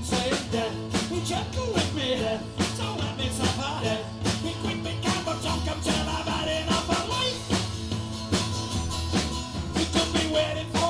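A live acoustic band playing a song: several strummed acoustic guitars over a small drum kit keeping a steady beat, with a voice singing over it at times.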